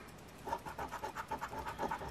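A coin scratching the coating off a scratch-off lottery ticket in quick back-and-forth strokes, about eight a second, starting about half a second in.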